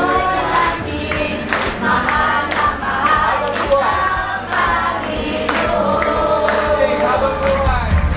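A group of voices singing a worship song together with musical accompaniment.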